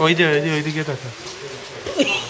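A person's voice holding one long vowel for about a second, dropping in pitch at the end.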